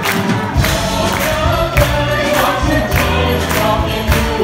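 Live symphony orchestra accompanying a group of singers in an upbeat song, with a steady percussive beat.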